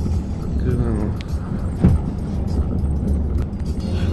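Low, steady road rumble heard from inside a moving car, with one sharp knock just under two seconds in.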